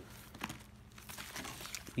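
Faint crinkling of shrink-wrapped 12-inch vinyl record sleeves being flipped through in a crate, with a few soft knocks of sleeves against each other.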